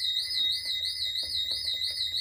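Intruder alarm siren sounding continuously: a high warbling tone that rises and falls about five times a second over a steady lower tone. The alarm has gone off and will not reset with the entry code.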